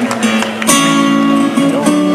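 Acoustic guitar playing the opening of a song, with a strong strummed chord less than a second in that rings on in held notes.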